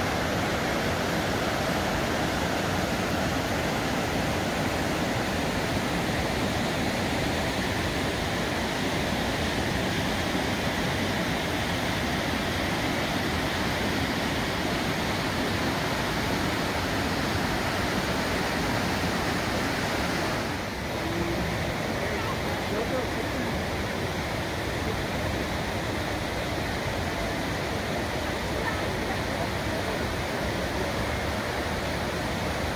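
Whitewater rapids of the Deschutes River: a loud, steady rush of fast water over rocks, dipping briefly about two-thirds of the way through.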